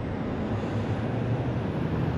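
Steady low rumble of a vehicle engine running.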